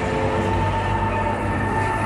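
Fairground ride's drive machinery running with a steady low drone and a steady whine as its long arm swings the gondola through the air.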